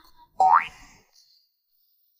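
A comic sound effect: one quick upward-sliding, whistle-like tone about half a second in.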